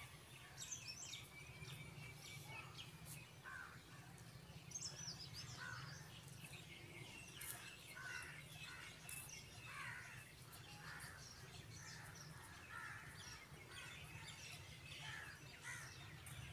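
Faint birds chirping and calling, many short calls scattered throughout, over a low steady hum.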